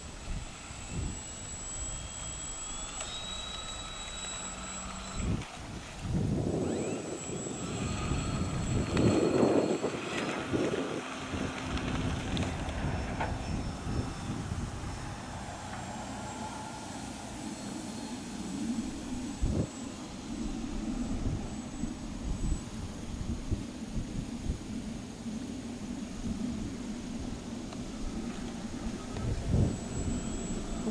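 QRP Smile-400 radio-controlled float plane's motor and propeller: a high whine that climbs in pitch in steps over the first few seconds as the plane throttles up to take off from the water, then rises and falls as it flies around.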